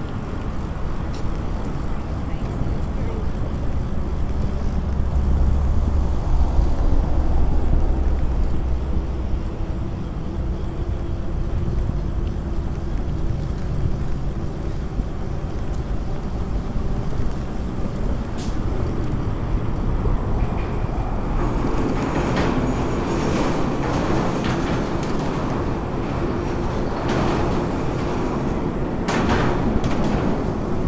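Wind buffeting the microphone, with tyre and ride noise from a moving e-bike, a steady low rumble. In the last third it turns rougher, with a run of knocks and rattles.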